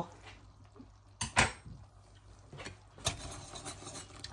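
Two sharp clinks of kitchen utensils a little over a second in. From about three seconds in, a wire balloon whisk starts clicking rapidly against the inside of an enamelled cast-iron pot as cream cheese is whisked into a cream sauce.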